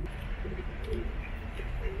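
Pigeons cooing, short low wavering calls repeated several times.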